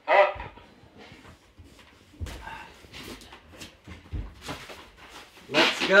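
Scattered rustling and knocks with a few soft low thumps, between a short voiced sound at the start and a louder one near the end.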